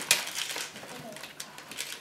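Gift wrapping paper crinkling and rustling in quick, irregular crackles as a present is being unwrapped.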